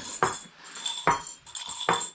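Tea glasses and spoons clinking: three sharp clinks spaced about a second apart, with light jingling between them.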